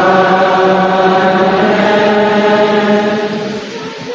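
Liturgical chant: a man's voice sings one long, steady note that fades away near the end.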